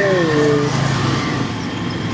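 A voice trails off with a long falling syllable in the first part of a second, over a steady low mechanical hum that carries on alone for the rest.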